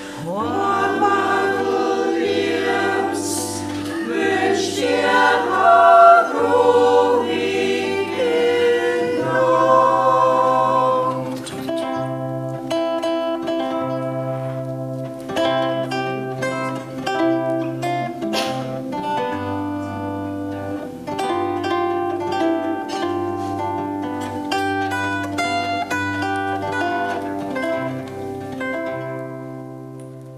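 A mixed choir singing a folk song to concert zither accompaniment. About twelve seconds in the voices stop and the zither plays on alone, its plucked notes and low bass strings ringing, until it dies away at the end.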